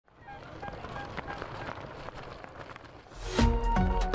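Faint background sound with light clicks, then about three seconds in a loud whoosh and a short synthesized tonal sting: the channel's logo jingle.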